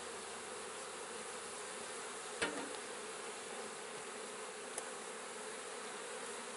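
Honey bees from an opened hive buzzing steadily in a dense, even hum as they are smoked off the top bars. A single sharp knock about two and a half seconds in.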